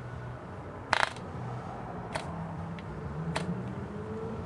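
Propeller of a small Cox glow-plug model engine being flipped by hand to start it: three sharp clicks, the loudest about a second in, and the engine does not catch and run.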